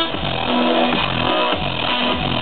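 Live electronic dance music played loud over a festival sound system: a distorted synth bass sliding down in pitch about twice a second over a dense backing.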